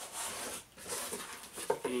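Cardboard box flaps rubbing and scraping as they are pulled open, in two short stretches of rustling.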